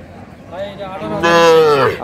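A young calf mooing once: one long call starting about half a second in, growing louder and falling in pitch as it ends.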